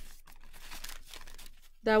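Brown paper lunch bag rustling and crinkling softly as it is handled.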